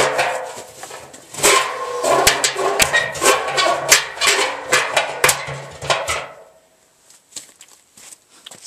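An animal calling over and over, loud, the calls stopping about six seconds in.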